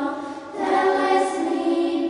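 Choir singing Orthodox liturgical chant, unaccompanied, on long held notes. One phrase tails off just after the start and the next begins about half a second in.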